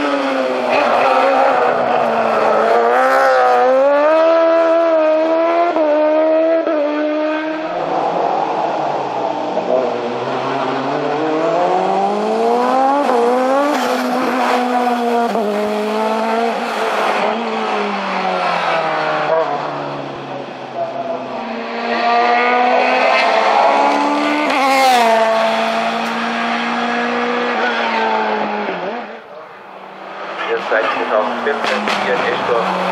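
Hillclimb race cars' engines at full throttle, one car after another. The pitch climbs through the revs and drops sharply at each gear change, with a short lull about twenty seconds in before the next car.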